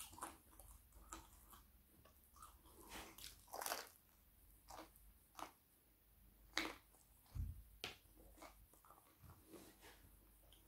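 Close-up eating sounds: a person biting and chewing a slice of stone-baked vegetable pizza, with irregular crunches and wet chewing clicks. There is one low bump a little past the middle.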